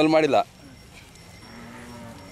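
Cattle mooing: a short call with a falling pitch at the start, then a fainter, steady low call in the second half.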